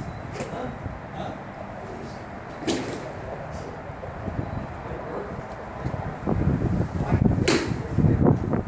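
Golf iron swung down and striking a ball off a driving-range turf mat, giving a sharp click just after the start. Further sharp cracks follow, one a little under 3 s in and the loudest about 7.5 s in.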